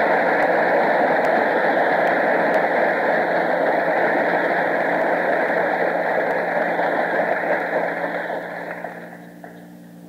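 Audience applause, steady, then dying away over the last couple of seconds.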